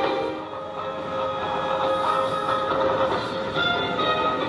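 Background music of sustained, held chords.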